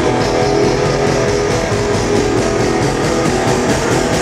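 A rock band playing live, loud and continuous: electric guitar over a drum kit, heard in a large hall.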